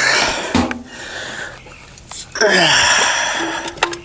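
Noisy handling and rustling sounds as the cap is taken off a gas string trimmer's plastic fuel tank, in two stretches, with a brief low vocal grunt.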